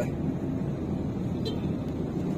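Steady low rumble of a moving vehicle's engine and road noise, heard from inside the vehicle.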